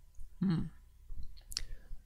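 A man's brief hummed "mm" about half a second in, then a single sharp click about a second and a half in.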